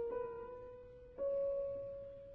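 Slow piano music played one held note at a time, with a new, higher note struck a little past a second in.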